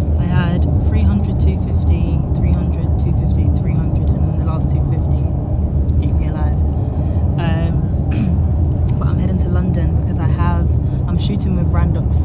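Steady low rumble of a car moving at road speed, heard from inside the cabin.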